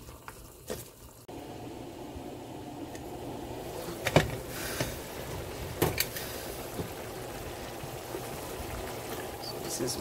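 Pot of chicken pelau simmering, a steady bubbling of liquid, with two sharp knocks of a wooden spoon against the aluminium pot about four and six seconds in.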